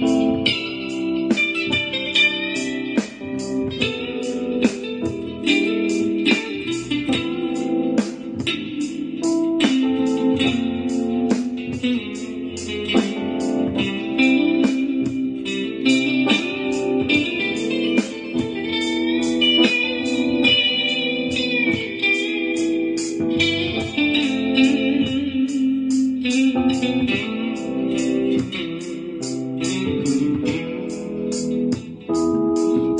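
Electric guitar playing an improvised lead over a backing track in A minor with a steady drum beat.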